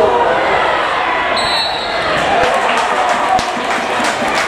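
Pitch-side sound of a football match: shouts from players and spectators over crowd noise, with the knock of a football being kicked.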